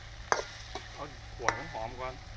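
A metal spatula stirring and scraping chilies and crispy pork in a wok over a fire, with the food sizzling. Two sharp clanks of the spatula on the wok, about a third of a second in and again after about one and a half seconds.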